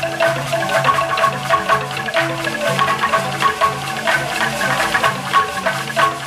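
Large Ugandan wooden xylophone played by several seated players at once with wooden beaters, sounding a fast, dense, interlocking run of pitched wooden notes.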